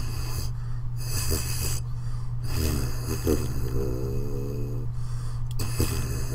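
Lips buzzing low into a tuba mouthpiece after a couple of audible breaths: a low, wavering buzz of about two and a half seconds, demonstrating the slow, open-aperture lip vibration a tuba needs, which is hard to sustain because there is very little resistance.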